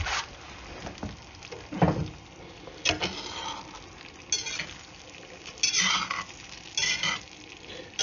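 Stainless steel Rada spatula scraping lightly across the bottom of a Lodge cast iron skillet while stirring scrambled eggs, in about six short strokes a second or so apart. The eggs sizzle faintly between strokes.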